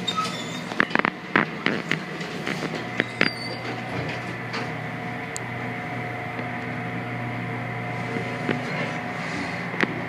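Century elevator running: a few clicks and knocks in the first three seconds, then a steady low hum with a faint whine as the car travels.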